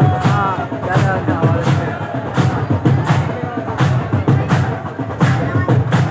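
A man's voice chanting a mourning lament (noha) with a crowd keeping a steady rhythmic beat of heavy thumps, typical of matam chest-beating in unison.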